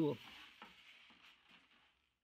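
Faint rubbing hiss that fades out over about two seconds: rigid foam insulation sheets being handled and pressed into a plywood cooler box.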